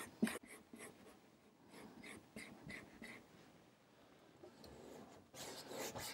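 Faint, soft scrubbing of an oil-paint brush working paint on a wooden palette, about three strokes a second, then a soft brushing rub near the end as the loaded brush goes onto the canvas.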